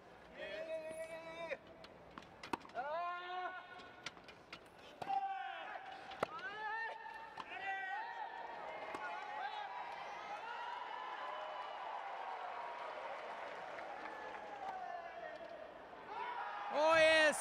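Wheelchair tennis rally: sharp clicks of racquet strikes and ball bounces about once a second, with voices calling out over them, one held as a long wavering call through the second half.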